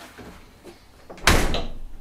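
A wooden door slams shut about a second and a quarter in: one loud bang that dies away over about half a second.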